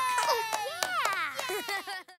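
High-pitched cartoon character voices squealing and cheering with swooping, arching pitch. They stop abruptly at the end.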